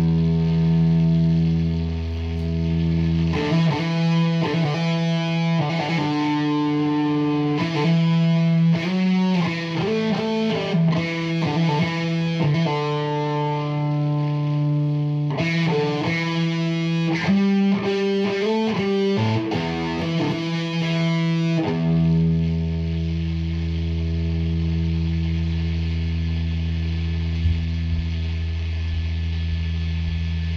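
Electric guitar played through an overdrive pedal into an amp: a held distorted chord at the start, a run of changing notes in the middle, then another long held chord from about two-thirds of the way through. The tone is very noisy and has changed since playing began, the sign of a fault in the pedal.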